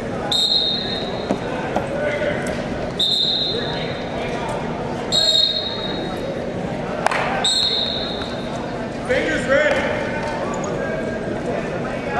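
Four short, high-pitched whistle blasts, each about half a second long and spaced two to three seconds apart. They sound over the steady voices and shouts of people in a large, echoing sports hall.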